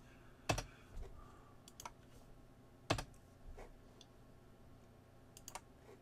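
A handful of sharp computer clicks over faint room hiss as drawn lines are selected and deleted on screen. The two loudest come about half a second in and about three seconds in.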